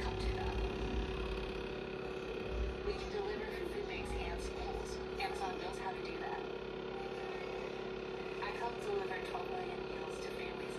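A steady machine hum with a constant tone and a low rumble, with faint, indistinct speech at times.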